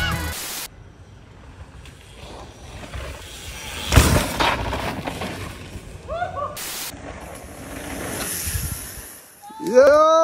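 A single sharp thump about four seconds in, the loudest sound, followed by a rush of noise that swells and fades near the end.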